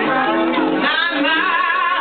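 A woman singing live with a small jazz band, acoustic guitar accompanying; in the second half a note is held with a wavering vibrato.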